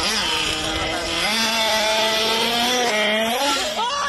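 A motor running with a steady pitched drone; the pitch steps up about a second in, holds, then wavers and slides near the end.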